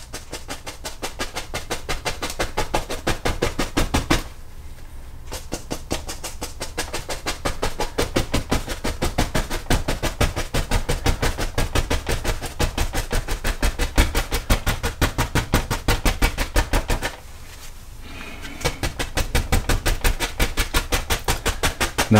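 A fan brush tapped rapidly against a stretched canvas, dabbing on tree foliage: a fast, even run of soft taps, several a second, with two short pauses, about 4 and 17 seconds in.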